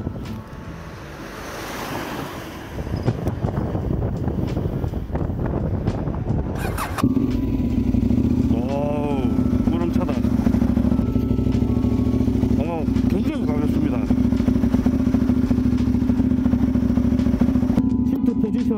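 KTM 890 Duke's parallel-twin engine starts with a sudden burst about seven seconds in and then idles steadily. Before it starts there is only an uneven outdoor noise.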